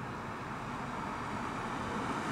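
Steady outdoor street noise: a low, even hiss of distant traffic.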